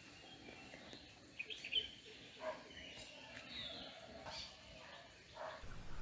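Faint birds chirping now and then over a quiet outdoor background, with a few soft clicks. Near the end a louder, steady rustling noise sets in.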